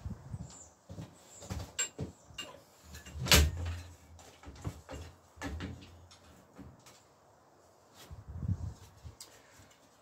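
Rear bicycle wheel being worked loose and pulled out of the frame: scattered clicks and rattles of metal parts, with one loud knock a little over three seconds in and a duller bump near the end.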